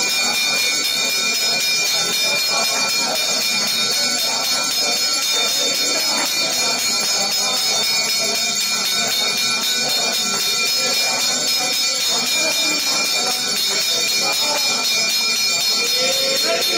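Temple bells ringing steadily with a fast, even stroke through the lamp aarti (harathi) at an Ayyappa shrine. A crowd of devotees' voices chants along beneath the bells.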